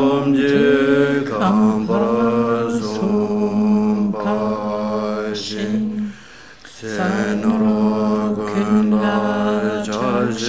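Voices chanting a Buddhist prayer text together on a steady reciting tone, the phrases held long and mostly level in pitch, with a short pause for breath about six seconds in.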